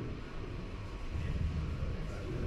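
Room tone in a presentation room: a low, steady rumble with no distinct events.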